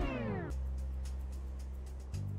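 A man's held sung note slides steeply down in pitch over about half a second, ending the song. A low steady hum follows.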